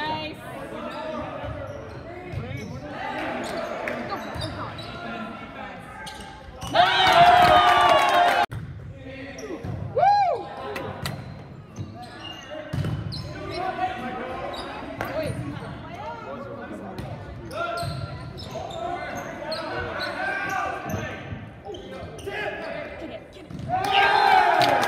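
Volleyball being played in a gymnasium hall: the ball is struck again and again while players call and shout to each other, with a loud burst of shouting about seven seconds in.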